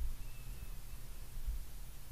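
Quiet room tone: a low steady hum with faint hiss and no distinct events.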